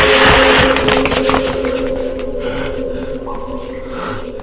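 Background film music with several held tones. It opens with a loud rushing noise that fades away in the first second.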